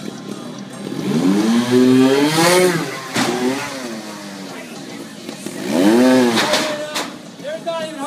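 Trials motorcycle engine revved hard twice, a long rev about a second in and a shorter one near six seconds, each rising and then falling in pitch as the bike is hopped up onto the next obstacle. A sharp knock follows each rev as the bike lands.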